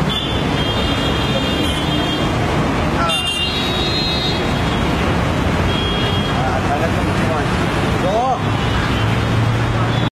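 Steady noise of street traffic going by, dense and loud.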